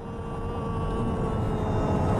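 Car cabin noise while driving: low engine and road rumble with a steady hum on top, fading up in level.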